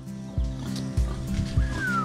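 A pig squeals once near the end, a short cry falling in pitch, over background music with a steady beat.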